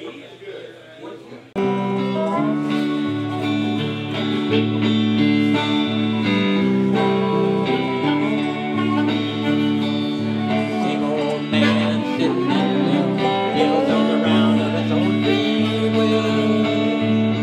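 A small live band starts abruptly about one and a half seconds in, with harmonica, electric guitar and dobro played with a slide together, mixing long held notes and sliding pitches.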